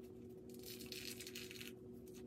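Faint crackly tearing of a gold peel-off face mask being pulled slowly off the skin of the cheek, over the steady hum of a room fan.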